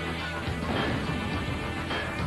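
Opening theme music with heavy crash hits, one a little under a second in and another near the end.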